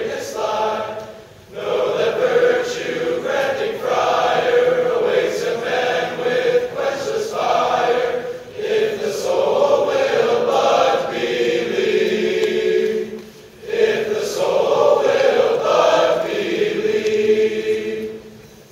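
A large male choir singing in phrases, with a few short pauses between them.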